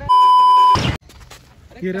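A loud electronic beep: one steady, high pure tone lasting under a second, cut off by a short burst of noise, then low background.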